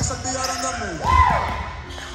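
Volleyball play in a gymnasium: a ball is struck with a thump about a second in, over players' voices and background music.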